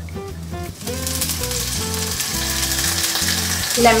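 Oil sizzling steadily in a hot pan, starting about a second in, as lemon juice is squeezed over it. Background music with a bass line plays underneath.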